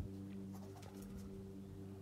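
Canada geese giving a few faint, distant honks in the first second or so, over a steady low hum.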